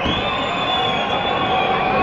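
Concert audience cheering, with a long shrill whistle held for over a second, over steady crowd noise.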